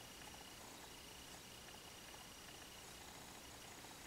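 Near silence: room tone with a faint, thin high tone that comes and goes.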